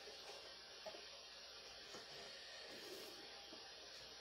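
Near silence: a steady faint hiss of room tone, with a couple of faint small knocks about a second in.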